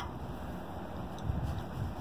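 Wind buffeting the microphone as a low rumble that swells about a second in, with a single light click at the start as a wrench is fitted onto the anchor strap's tensioner bolt.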